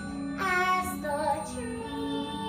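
A girl singing a wordless melody of long held notes with vibrato, over a sustained instrumental accompaniment.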